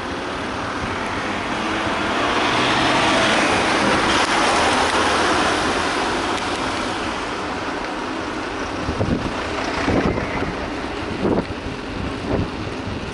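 A van overtaking close alongside, its road and engine noise swelling for a few seconds and then fading, over steady wind rushing on a bike-mounted action camera. A few sharp knocks come near the end.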